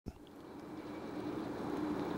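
A steady mechanical hum with one held tone, fading in from quiet and growing louder.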